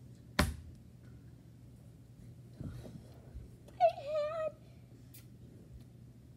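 A hand slapping down hard on a carpeted floor, once, about half a second in. A short high-pitched, wavering cry follows a few seconds later.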